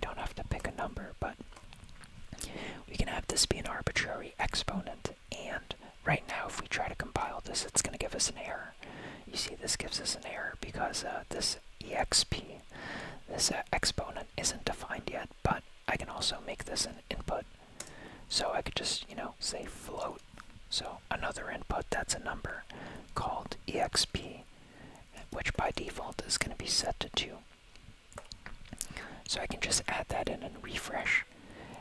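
Whispered speech.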